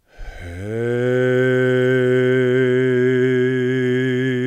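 A man's voice intoning one long, steady low note in a meditative chant. It starts abruptly and is held without a break.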